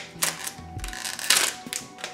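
Trading cards being flicked and slid past one another in the hands, a few short crisp snaps, over quiet background music.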